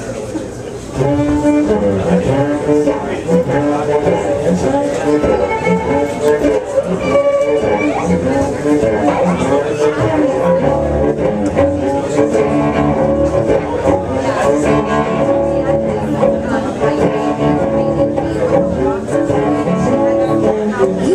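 Two cellos bowed together in an instrumental passage, the playing stepping up in loudness about a second in.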